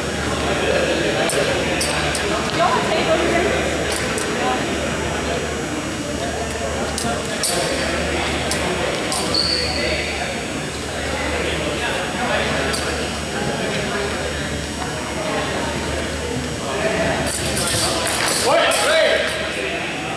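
Longsword blades clashing and clicking in short sharp contacts during a fencing bout, one ringing ping about nine and a half seconds in and a quick cluster of clashes near the end, over the steady murmur of voices echoing in a large gym hall.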